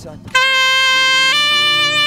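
Saxophone playing long held notes: a note starts loudly about a third of a second in, then steps up to a higher note a second later, which is held.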